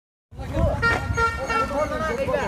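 After a brief gap of silence, a motorcycle engine runs nearby and a vehicle horn sounds a steady hoot for about a second, over people talking.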